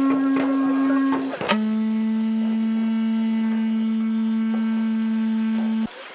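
A large hand-held horn blown by mouth in long droning notes: a first note that breaks off after about a second, then a slightly lower note held steady for over four seconds and cut off sharply near the end.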